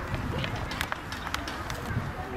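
Indistinct, distant voices over a steady outdoor background noise, with several short, sharp clicks scattered through it.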